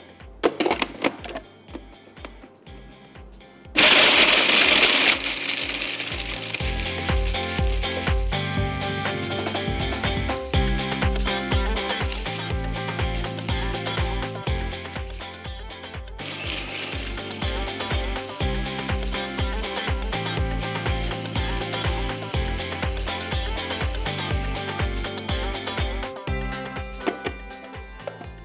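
Small electric food processor grinding whole biscuits into crumbs. It starts suddenly and loudly about four seconds in, runs steadily, stops briefly a little past the middle, then runs again nearly to the end.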